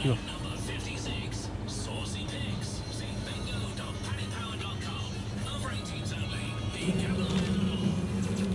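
Shop background music and voices, then near the end a Costa Express self-service coffee machine starts making the ordered drink with a louder, steady motor hum.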